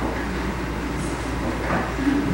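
Steady low hum and hiss of room noise, with faint indistinct sounds over it.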